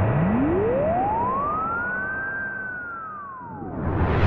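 A synthesized tone sweeping slowly up and then back down like a slowed-down siren, with a fainter second sweep beside it over a low steady drone, fading away. Just before the end, a loud rushing noise swells in.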